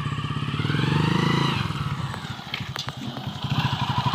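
Small motorcycle engine running as the bike is ridden past with two aboard, its level and pitch rising to about a second in, then easing off.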